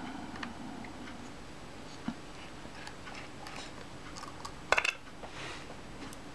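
A small screwdriver turning out the screws of a Mamiya Family SLR's metal bottom plate: faint scattered ticks and scrapes, with a short run of sharper metallic clicks near the end.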